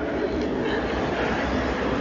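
A steady, even noise with a low rumble underneath and a thin hiss above, holding one level and stopping when the voice returns just after the end.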